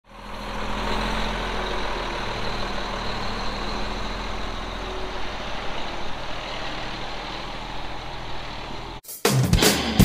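A heavy engine running steadily at a constant low hum, fading in over the first second. About nine seconds in it cuts off abruptly and loud guitar music starts.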